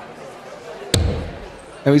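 A steel-tip dart strikes a bristle dartboard once, about a second in, with a short sharp thud.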